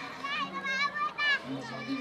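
Children's voices in the background, high-pitched calls for about a second, over a steady low hum.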